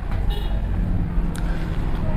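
Low steady background rumble, with a faint click about one and a half seconds in.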